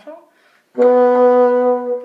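Bassoon playing a single held B natural, the B just below middle C, as one step of a slow chromatic scale. The note starts cleanly about three-quarters of a second in and is held steady for just over a second.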